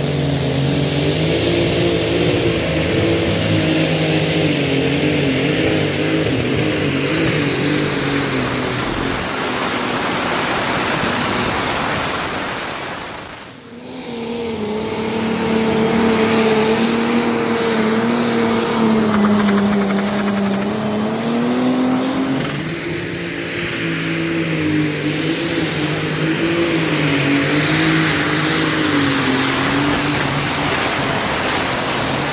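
Competition pulling tractors' engines running at high revs under load as they drag a weight-transfer sled, the pitch wavering with a steady high whine above the engine note. About halfway through the sound drops away briefly and another tractor's engine takes over.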